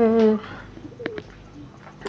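A woman's voice holding a long, level "euh" of hesitation at the start, then a few faint clicks about a second in.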